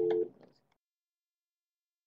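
The end of a steady two-tone electronic beep, two pitches sounding together, cutting off about a quarter second in. A few faint clicks follow, then the audio goes dead silent.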